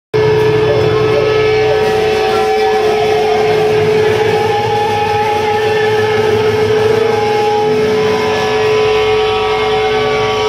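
Loud live-band amplifier noise: a single held tone a little under 500 Hz over a distorted hum, typical of electric-guitar feedback ringing out between songs. It holds steady with no beat.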